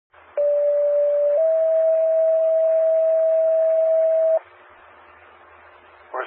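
Fire department two-tone sequential paging alert heard over a scanner radio. A steady tone lasts about a second, then a slightly higher tone holds for about three seconds before cutting off, followed by faint radio hiss. The tones alert the station ahead of a voice dispatch.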